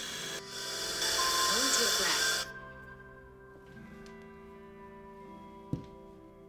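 A long, deep inhale drawn through a handheld Lumen breath-analyser mouthpiece, a rushing hiss that stops sharply about two and a half seconds in. Soft background music with steady tones runs underneath, and a single click comes near the end.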